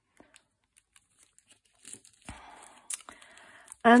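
Thin clear plastic sleeve around a metal cutting die rustling and crinkling as fingers handle it, starting about two seconds in, with one sharp click.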